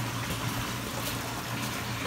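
Bath tap running into a filling bathtub with a steady hiss of pouring water and a low hum underneath.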